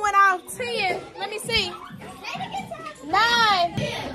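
High-pitched children's voices calling out and chattering, no clear words, with a louder call about three seconds in.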